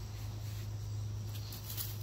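Garden ambience: a steady low hum with insects chirping, and between about one and two seconds in a light scratchy rustle of soil and mulch scraped by hand.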